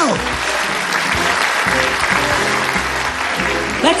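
Studio audience applause, a steady even clapping, over a background music track.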